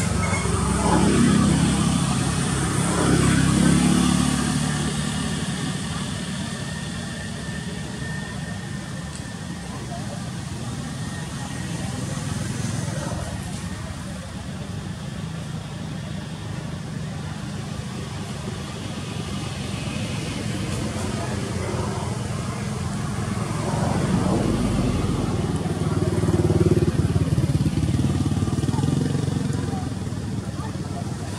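Motor vehicles passing on a road: the engine sound swells and fades about a second in and again near the end, over a steady low rumble.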